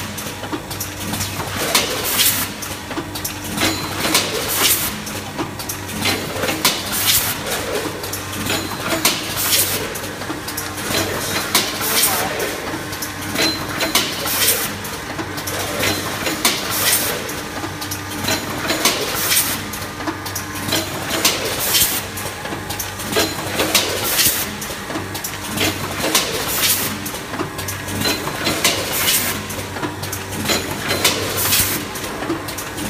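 Rotary premade-pouch packing machine running: a steady hum under a repeating cycle of short hissing bursts, roughly one a second, as it fills and seals popcorn pouches.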